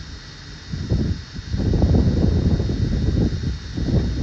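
Wind buffeting the microphone: a gusty, uneven low rumble that picks up about a second in.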